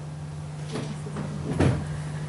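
A few brief knocks or clatters, the loudest about one and a half seconds in, over a steady low hum.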